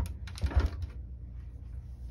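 A few soft knocks and clicks of craft supplies being handled and set down on a work table, the loudest at the start and about half a second in.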